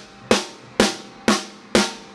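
Rim shots on a snare drum with a brand new wooden drumstick: four sharp, evenly spaced cracks about two a second, each ringing briefly. The strikes are a wear test, and they are already marking the wood of the stick.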